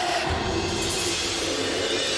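Television news programme's music sting for its logo transition: a dense burst of music with a deep hit shortly after it starts, then a bright, sustained wash.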